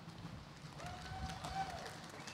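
Quiet hall ambience in a pause between announcements: faint scattered light clicks, and a faint distant voice held for about a second in the middle.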